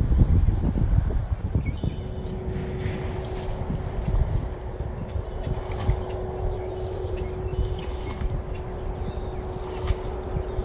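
Footsteps pushing through a floating mat of alligator grass, the wet stems and roots giving underfoot. Heavy wind rumble on the microphone in the first couple of seconds. A steady faint hum from about two seconds in.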